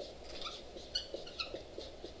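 Dry-erase marker squeaking on a whiteboard in a run of short, irregular strokes as a word is written.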